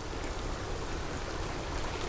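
Steady, even hiss of water noise, with a faint tick near the end.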